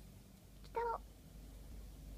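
A single short, high-pitched, meow-like vocal call about a second in, over a faint steady hum.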